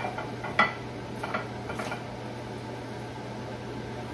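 Hands rubbing seasoning into raw fish fillets, with a few brief shakes of a seasoning shaker in the first two seconds, over a steady low hum.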